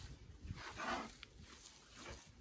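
Hands kneading and squeezing a mass of minced meat on a metal tray: a run of soft, wet squelches and slaps. About a second in there is one louder, rough noise lasting about half a second.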